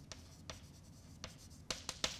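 Chalk writing on a blackboard: faint scratching strokes with a few sharper taps, the clearest near the end.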